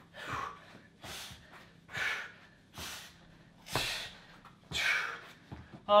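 A man breathing hard from strenuous exercise: forceful, rasping puffs of breath about once a second, out of breath.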